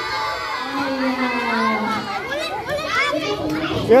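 A crowd of children's voices chattering and calling out over one another, from schoolchildren hurrying to form groups of four in a game. A single louder word, "yo", comes right at the end.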